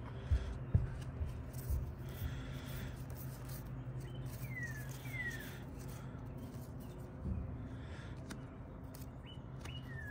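Outdoor quiet with a steady low hum; a bird gives two short whistled notes, each falling in pitch, about halfway through. A few thumps near the start.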